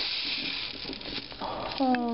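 Large-grain couscous pouring from a plastic container into a saucepan of melted butter: a steady hiss that fades away about a second in, followed by a few clicks.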